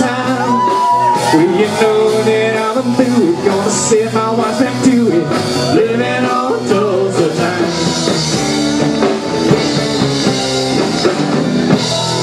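Live band playing an upbeat country-rock song with a steady beat.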